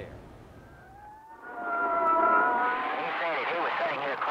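Siren winding up and holding a wail, then a loud din of crowd voices and traffic, from archival 1963 film sound.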